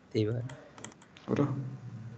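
Computer keyboard keys clicking in a short run of typing, set between two brief snatches of a man's voice.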